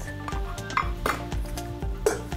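A stainless steel bowl clattering against plates as it is handled, with two short clinks about a second in, over background music with a steady beat.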